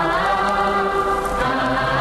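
Opening of an old Hindi film song playing on radio: voices in chorus hold long notes and slide from one pitch to the next.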